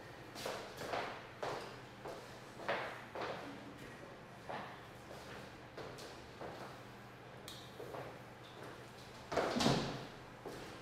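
A series of soft knocks or thuds, about two a second, over a steady low hum, with a louder, longer one near the end.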